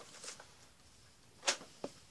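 Yearbook pages being handled and turned: a quick papery swish about a second and a half in, then a smaller one just after.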